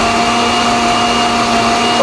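Osterizer blender running steadily, liquefying water with chunks of chayote, onion and garlic: an even motor hum with a high whine held at one pitch.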